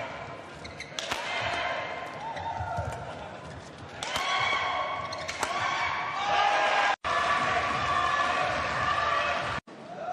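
Badminton rally on an indoor court: sharp racket strikes on the shuttlecock and squeaking shoes, with shouting voices swelling over the second half as the point is won.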